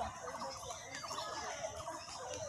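Birds chattering: several quick runs of rapid repeated notes, one after another.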